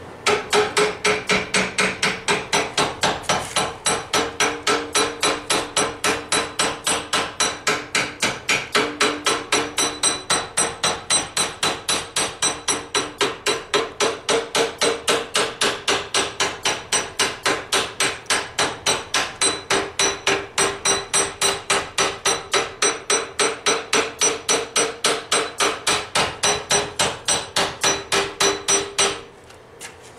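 Steel hammer striking a railroad spike clamped in a bench vise, in a steady run of about three blows a second, each with a metallic ring. The hammering stops about a second before the end.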